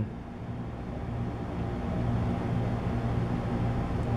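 Steady low background hum with a constant pitch, growing slightly louder over the first second or so and then holding even.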